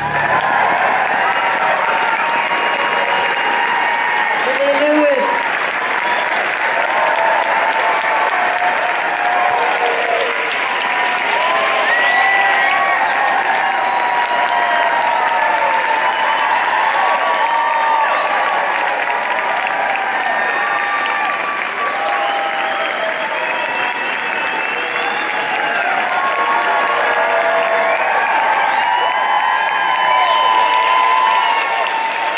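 Concert audience applauding, with shouts and whoops over steady clapping.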